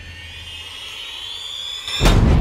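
Horror trailer sound design: a noisy, whooshing whine that slowly rises in pitch and grows louder, building up to a loud boom right at the end.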